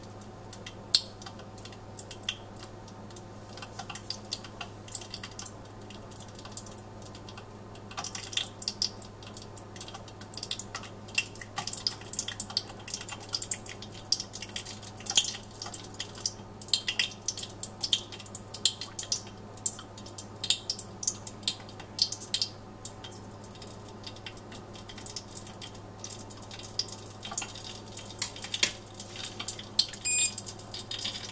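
Hot mineral oil at about 160 °C in a steel saucepan, with nylon pieces in it, crackling with irregular small pops and ticks that come much more often from about eight seconds in. A steady low hum runs underneath.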